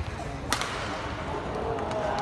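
A badminton racket striking a shuttlecock in a jump smash: one sharp, loud crack about half a second in, over the steady hum of an arena.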